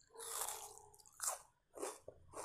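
A person biting into and chewing a slice of raw onion close to the microphone: one longer bite in the first second, then two sharp crunches, about a second and a quarter in and near the end.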